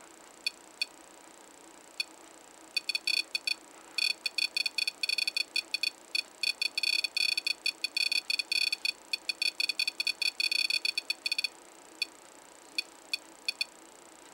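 REM-POD's built-in buzzer beeping in short high-pitched chirps: a few scattered beeps, then a rapid stuttering run from about three seconds in until about eleven and a half seconds, then scattered single beeps again. The alarm is set off when something disturbs the field around its antenna.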